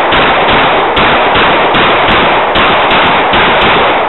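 A rapid string of semi-automatic pistol shots, about three a second, so loud that they blur together.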